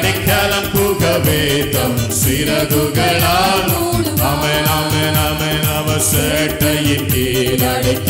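A man singing a chant-like worship song into a microphone over amplified music with a steady beat.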